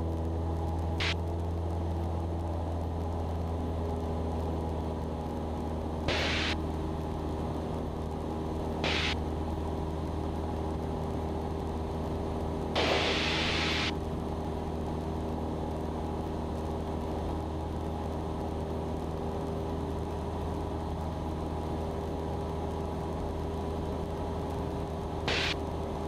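Cessna 172's piston engine and propeller droning steadily at climb power, a constant low hum inside the cabin. A few short bursts of hiss like radio static break in, the longest lasting about a second midway.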